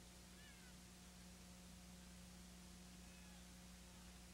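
Near silence: steady electrical hum and tape hiss, with a few faint, short gliding squeaks about half a second in and again later.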